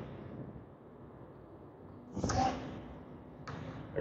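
Trash being gathered up by hand: a short rustling whoosh about two seconds in and a fainter, briefer one near the end.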